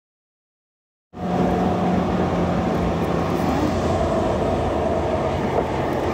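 Car driving at road speed: steady engine and tyre noise with a low hum. It cuts in abruptly out of dead silence about a second in.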